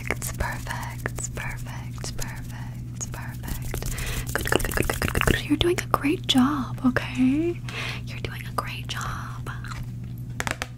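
Close-up ASMR whispering into a fluffy microphone, mixed with many small mouth clicks and hand sounds, with a short wavering hum about six seconds in. A steady low electrical hum runs underneath.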